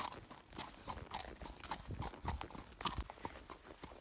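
Horse's hooves striking and crunching on a gravel road, an uneven run of hoofbeats about three a second.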